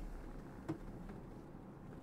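Quiet room tone with a single faint click about two-thirds of a second in.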